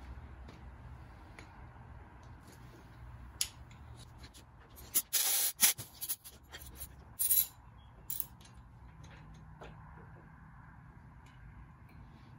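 Short bursts of compressed air from an air blowgun, the longest and loudest about five seconds in, blowing dirt out of the spark plug wells before the plugs are removed. A few light clicks sound between the bursts.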